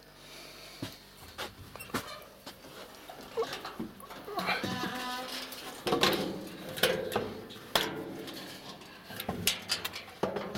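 A domestic cat yowling: one long drawn-out cry about four seconds in, then further cries about two seconds later, among scattered knocks and handling noise.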